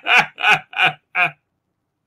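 A man laughing: about four short laughs roughly a third of a second apart, breaking off about a second and a half in.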